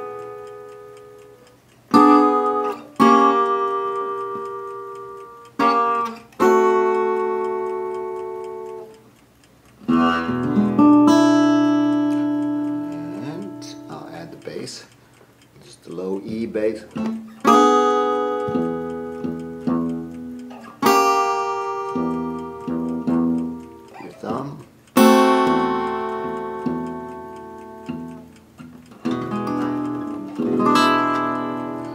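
Guitar playing a simple blues progression in E built on two seventh-chord shapes, each chord struck and left to ring out for one to several seconds before the next.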